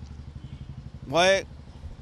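A steady, evenly pulsing low engine hum, like a vehicle idling, runs under a man's single short spoken word about a second in.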